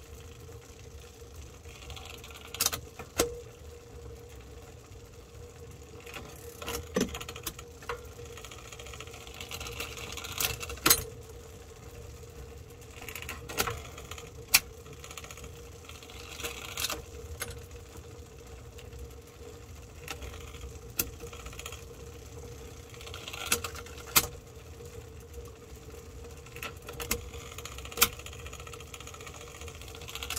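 Bicycle chain turning on the chainrings while a Shimano Dura-Ace AX front derailleur is shifted back and forth by its down-tube lever: a steady running whir, short rasping stretches as the chain is pushed across, and sharp clicks and clunks several times as it drops onto a ring.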